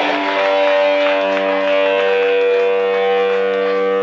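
Amplified electric guitar sustaining a held, droning note with ringing overtones, a lower note joining in about a second in.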